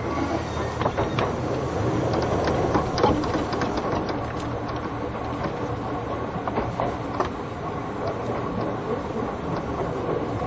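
Seibu New 2000 series electric commuter train running between stations: a steady rolling noise with scattered clicks of the wheels over rail joints.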